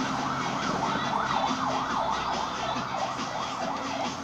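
A siren-like wail sweeping rapidly up and down, about two to three times a second, over dance music played through a loudspeaker; the wail fades out near the end.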